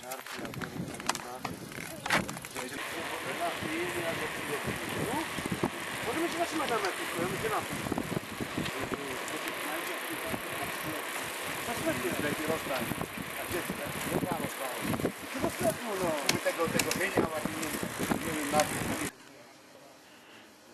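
Steady rushing noise of riding a bicycle along a paved road, with indistinct voices of the riders under it. It cuts off suddenly about a second before the end.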